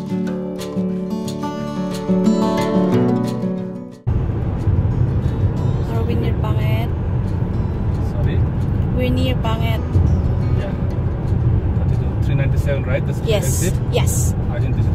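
Acoustic guitar music that cuts off about four seconds in, followed by the steady low rumble of road and engine noise inside a car's cabin at highway speed, with a couple of brief snatches of a voice.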